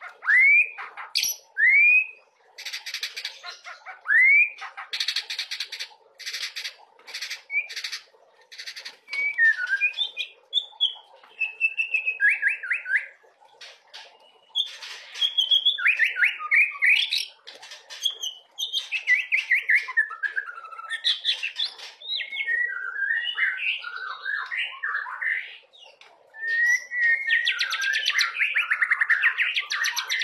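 Male white-rumped shama (murai batu) singing: harsh rasping chatters mixed with short rising whistles in the first several seconds. It then moves into long, varied warbling phrases and quick trills, ending in a dense buzzy run.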